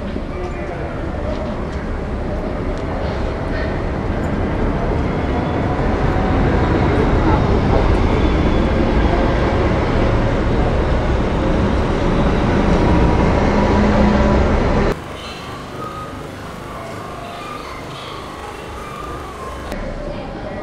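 Steady low rumble of a moving vehicle under indistinct voices, slowly growing louder, then cut off suddenly about three-quarters of the way through, giving way to a quieter background with voices.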